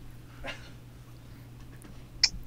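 A quiet pause in a studio or call audio feed: faint room tone with a steady low electrical hum, and one brief soft sound about half a second in.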